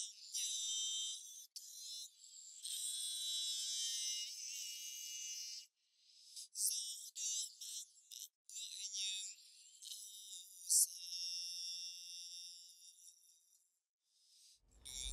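Sung bolero vocal with everything but its highest part filtered away, as when a de-esser's sidechain is monitored. What is left is a thin, hissy, whiny line of singing with vibrato, broken into phrases, with sharp 's' sounds standing out.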